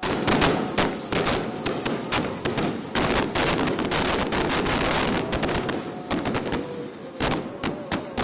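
Fireworks going off: a dense, continuous crackle packed with sharp bangs, thinning to more separate bangs near the end.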